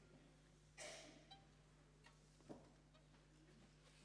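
Near silence: room tone with a steady low hum, a brief faint rustle about a second in and a faint tap midway.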